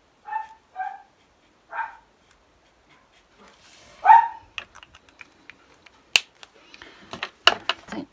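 A small dog barking four short times, the last, about four seconds in, the loudest. Near the end, several sharp clicks and taps.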